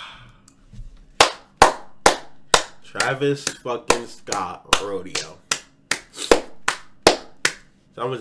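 A man clapping his hands in a steady rhythm, about two to three claps a second, starting about a second in, with short wordless vocal sounds between the claps.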